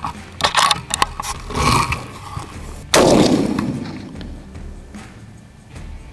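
A single shot from a Howa Super Lite .308 bolt-action rifle about three seconds in, a sharp report followed by a long echo that fades over two seconds or so. A few light clicks of handling come before it.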